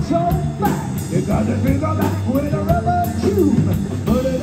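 Live blues-rock trio playing: electric guitar, electric bass and drum kit with steady cymbal strikes, and a man singing with sliding, bending notes over the band.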